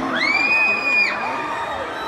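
A shrill, very high-pitched shriek from someone in the concert audience, rising quickly and then held for about a second before it stops, over a cheering arena crowd.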